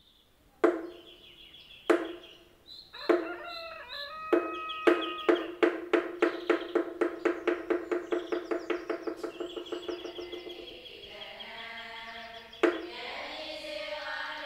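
Pitched percussion struck three times slowly, then in a long run of strikes that quickens and fades out, with birds calling behind it. Near the end, voices chanting come in along with one more strike.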